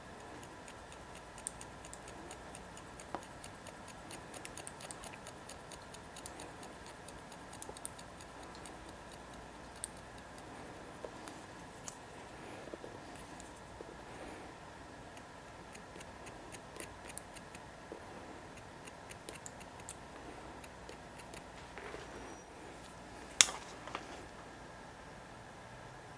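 Hair-cutting scissors snipping through hair in faint, short clicks, often in quick little runs. One much louder sharp click comes near the end.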